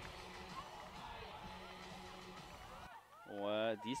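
Faint ambience of a football ground with distant voices, which cuts off abruptly about three seconds in; a man's voice then starts speaking.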